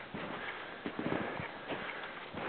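Boots crunching into snow with each step while climbing, about one footfall every two-thirds of a second.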